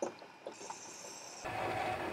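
Faint, irregular scraping of a hand-held graver cutting metal on a workpiece spinning in a small lathe, with a thin high hiss. A little over a second in, a louder steady mechanical hum takes over.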